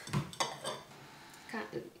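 A small ceramic dish clinking against the table as it is picked up and set down upside down on paper, with a few sharp clinks in the first second.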